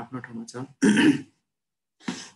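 A man clearing his throat once: a short, loud, rough burst about a second in, after a few words of speech.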